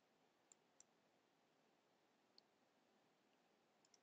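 Near silence: faint room hiss with a few tiny, faint clicks scattered through it.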